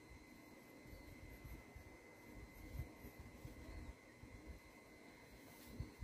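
Near silence: room tone with a faint, thin, steady high tone and a few soft bumps.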